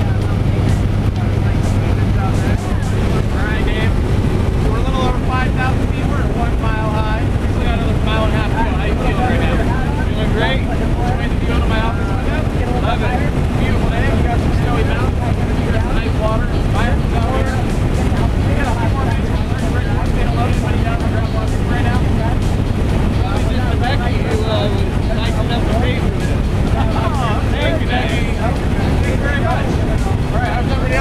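A jump plane's engine droning steadily inside the cabin during the climb, with wind noise and muffled voices of passengers talking over it.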